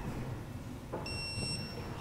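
A single electronic beep about a second in, lasting under a second, over a low steady shop rumble.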